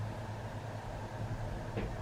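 Steady low background hum in the room, with faint fumbling and a small click near the end as a rhinestone choker's hook clasp is fastened behind the neck.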